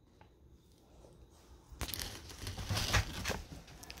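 A dog climbing up a padded step onto a bed, its paws rustling and crumpling the comforter and bedding, starting about two seconds in and getting louder.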